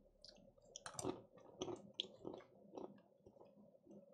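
Faint chewing of cashew nuts, a string of soft, irregular crunches about every half second.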